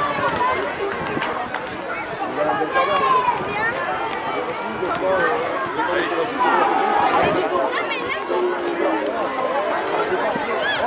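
Many overlapping voices of young rugby players and spectators calling out and chattering across an open pitch during play, with frequent high-pitched shouts.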